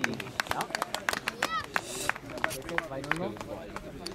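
Indistinct voices of people at an outdoor football pitch, with many irregular sharp clicks scattered throughout and a few short chirps about one and a half seconds in.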